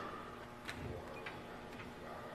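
A few faint clicks, about three, from hands taking hold of the metal door handles on a vacuum kiln, over quiet room tone.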